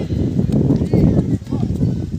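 Irregular thuds of bare or shod feet running on a dirt ground during a kho kho chase, with boys' voices calling out. The thudding eases off just before the end.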